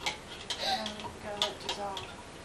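Light, irregular clicks of a stirrer against plastic cups of egg dye, a few times over the two seconds. A voice murmurs underneath from about half a second in.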